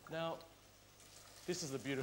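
A man's voice: a short spoken sound at the start, a quiet pause of about a second, then speech resumes.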